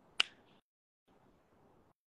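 A single sharp click about a fifth of a second in, over a faint hiss that cuts out briefly.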